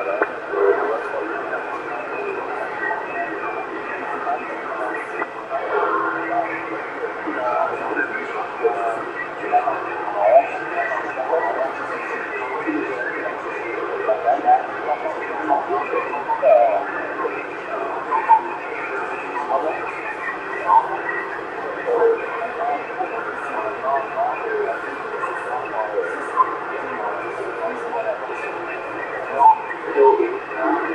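Voices of distant CB stations received on the 27.625 MHz channel and played through a Yaesu FT-450 transceiver, narrow and tinny like radio audio, broken up and half-buried in a steady hiss of static.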